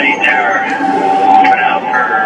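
A man's voice over an air-band radio transmission, thin and narrow-sounding, with a steady tone running underneath.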